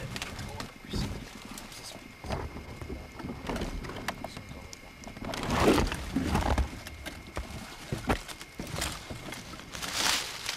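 Camcorder being handled and pushed through dry brush and leaf litter into a den: irregular rustling, crackling and knocks, loudest a little past the middle, over a faint steady high whine.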